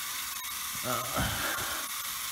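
Small battery-powered electric motor of a plastic toy bullet train buzzing steadily as it runs. The train has come loose on the loop of the track.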